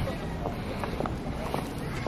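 Wind buffeting a handheld camera's microphone in a low, steady rumble, with faint voices of people nearby.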